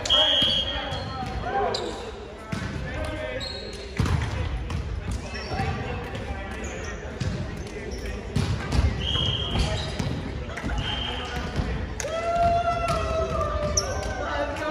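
Indistinct chatter of several players echoing in a large gym, with a volleyball bouncing on the hardwood court and a few short, high squeaks.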